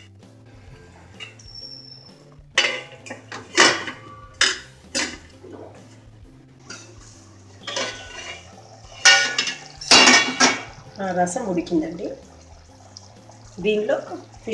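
Metal kitchenware clanking: a ladle and a steel plate lid knocking against an aluminium cooking pot, a string of sharp clinks through the first ten seconds or so.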